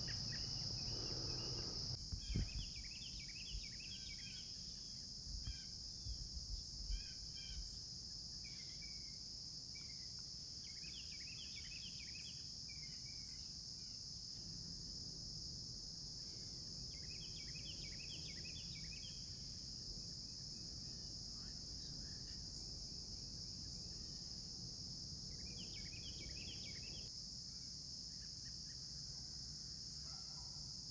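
Steady, high-pitched chorus of insects such as crickets, with a bird calling in short bursts of quick chirping notes about half a dozen times. A few low thumps sound in the first few seconds.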